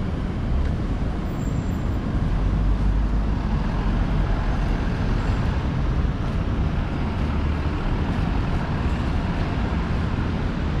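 Steady road traffic on a multi-lane city street: passing cars, with a deeper low rumble from about two to four seconds in.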